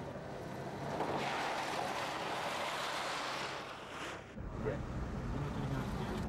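A broad rushing noise that swells for about three seconds, then breaks off at an edit into a lower, rumbling background.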